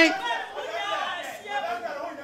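Audience chatter: several voices talking and calling out at once, softer than the microphone speech around it.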